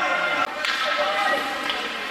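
A single sharp crack of a hockey puck impact about half a second in, ringing in the rink, over crowd and players shouting.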